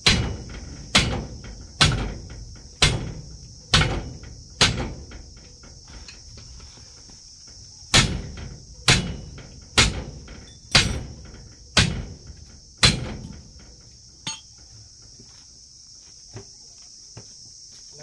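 Hand hammer striking the steel hub of a tractor-trolley wheel during a tyre change: six blows about a second apart, a pause of about three seconds, then six more, each ringing out briefly. A steady high-pitched insect drone runs underneath.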